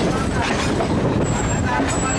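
Class S8 diesel multiple unit pulling out and running, heard from on board at an open doorway: a steady loud rumble of diesel engine and wheels on the rails, with a thin high whine coming and going about halfway through.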